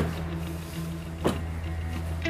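Car doors shutting twice, about a second apart, the second louder, over a steady low music drone.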